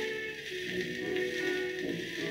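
Orchestra playing a waltz from a 78 rpm shellac record on a turntable, with steady surface hiss under the music.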